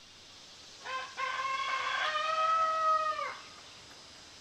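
A rooster crowing once, about a second in: a short opening note, then a long held call that falls away at its end.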